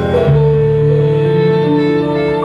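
Live jazz sextet playing a slow passage: a long held note over a low sustained bass note, entering about a third of a second in, with keyboard underneath.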